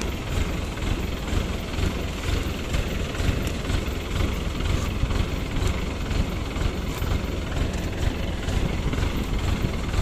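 Rice combine harvester's engine running steadily.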